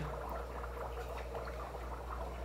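Aquarium room background: a steady low hum with faint water trickling and bubbling from the tanks' filtration.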